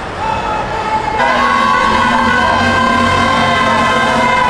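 Vehicle horns sounding: a long, steady held blast begins about a second in and lasts, with another horn tooting in short repeated beeps beneath it.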